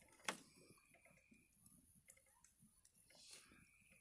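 Near silence, broken by two faint sharp clicks near the start and a few fainter ticks after.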